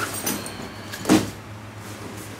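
Nylon bags being handled: fabric rustling in short bursts, with one louder thump about a second in as a bag is moved.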